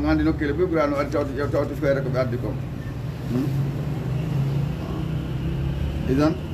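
A man speaking for about the first two and a half seconds, then a pause filled by a steady low motor drone from a vehicle running nearby, with a faint high tone joining about four seconds in.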